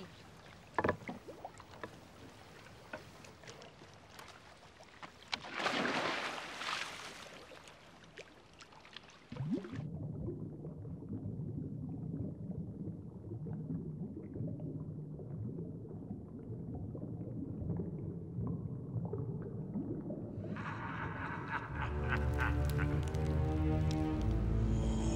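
Water lapping against a canoe, with a loud splash about six seconds in as a swimmer dives in. About ten seconds in the sound turns muffled and low, an underwater-style drone, and music swells near the end.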